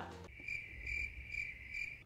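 Cricket chirping sound effect, a steady high-pitched trill with a light regular pulse that starts just after the talking stops and cuts off suddenly near the end. It is the stock comic cue for an awkward silence.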